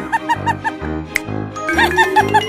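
Cheerful background music with a steady beat, over which a high-pitched, sped-up cartoon 'ha ha ha' laugh runs through the first second and starts again near the end.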